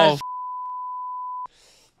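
A censor bleep: one steady, single-pitch beep lasting a little over a second, dubbed over a swear word that a man's voice begins just before it.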